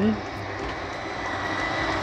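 Lippert Schwintek in-wall slide-out motors running as the bedroom end-wall slide retracts: a steady motor hum with a faint high whine that rises slightly in pitch.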